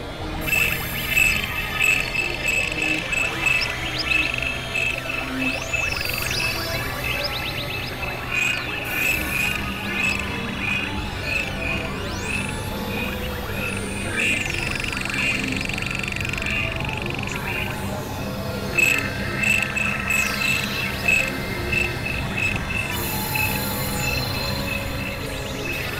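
Layered experimental electronic music: a high beeping tone pulsing about four times a second over low steady drones, with gliding whistle-like sweeps above. Partway through, the pulses give way to a steady held tone for a few seconds, and they return near the end.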